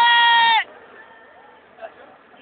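A person's high-pitched, drawn-out cry held on one note. It cuts off abruptly about half a second in.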